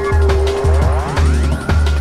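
Mid-1990s atmospheric drum and bass: a heavy sub-bass line and a fast broken drum beat under a held synth note. About a second in, a swooshing effect glides upward in pitch.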